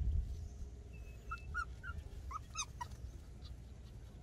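Puppy whimpering: short high whimpers in two small clusters, about a second and a half in and again near the three-second mark, over a low rumble that is loudest at the start.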